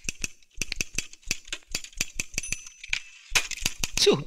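Typewriter keys being struck in a fast, even run of clicks, about six or seven a second, on a Facit office typewriter. The typing stops briefly near the end, followed by a single louder knock.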